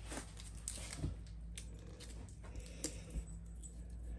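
Faint handling sounds of a lighting wiring harness being taped down onto the cork back of a dartboard: a few light clicks and taps of cable and tape, over a low steady hum.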